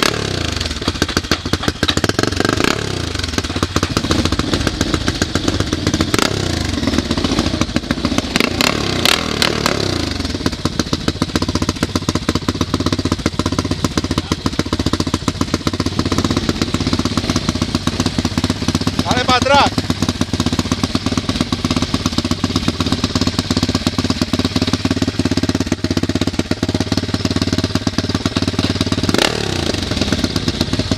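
Quad ATV engines running at low speed, revving up and down a few times in the first ten seconds. A person laughs briefly about twenty seconds in.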